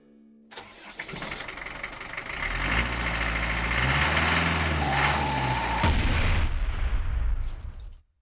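An engine starts suddenly about half a second in, then runs and revs up and down before cutting off abruptly at the end.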